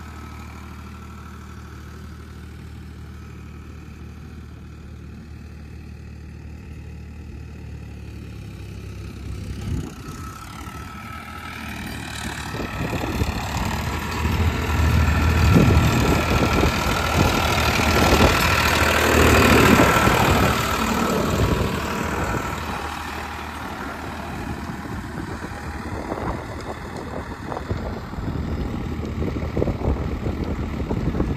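Farmtrac 60 tractor's diesel engine running steadily at a low idle for about ten seconds, then growing louder and rougher. It is loudest between about fifteen and twenty seconds in, then eases back to a steadier, moderate level.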